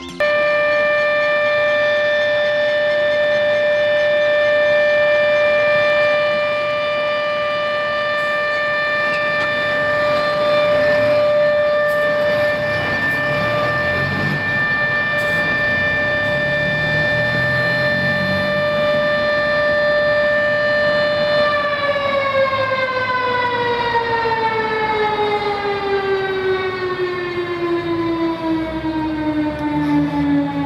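Fire station siren sounding a long ceremonial blast: a loud, steady, high tone held for about twenty seconds, then winding down in a slow falling glide over the last several seconds.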